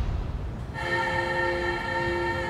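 A sustained horn-like chord of several steady tones starts suddenly about a second in and holds, after the fading tail of a louder, noisier sound.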